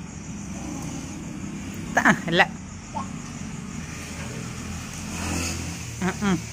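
Low, steady rumble of a motor vehicle going by, growing louder near the end. A short voice call, the loudest sound, comes about two seconds in.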